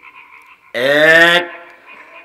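A man's voice through a microphone calling out the single word 'এক' ('one'), loud and drawn out for about half a second, falling in pitch, a little under a second in. Before and after it, only a faint steady hum.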